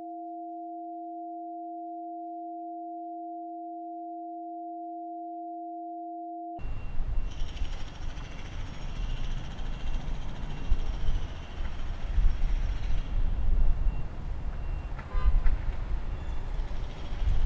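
Film soundtrack: a steady electronic hum of two pure tones, one an octave above the other, that cuts off abruptly about six and a half seconds in to a loud, uneven outdoor rumble with hiss.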